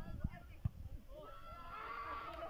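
Two dull thumps, then a high, drawn-out call from a person's voice starting about a second in and still going at the end, typical of a player or onlooker shouting during a game.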